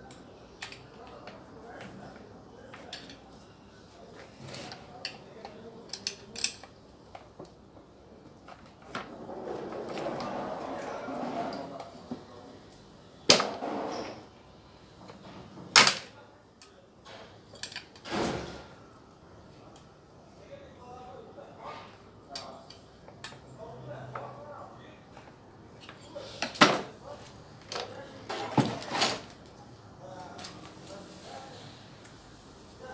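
Clicks and knocks of hand tools and metal parts while a Stihl MS 660 chainsaw is being taken apart on a wooden bench, around the carburetor. There is a rustling, scraping stretch about a third of the way in and a handful of sharp knocks, the loudest a little before the middle and near the end.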